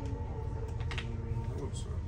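Indistinct background chatter in a busy room, with a steady tone running underneath and a couple of short taps about a second in.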